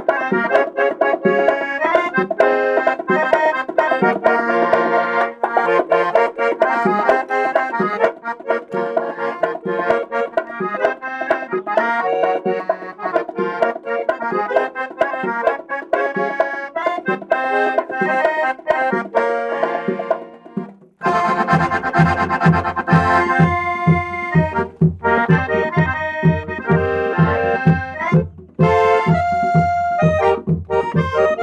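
Hohner piano accordion playing a fast tune in full chords with quickly repeated notes. About two-thirds of the way through it breaks off for a moment and comes back with deep bass notes on a steady beat under the chords.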